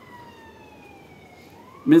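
A faint siren wail: one high tone gliding slowly down in pitch, then turning back up near the end.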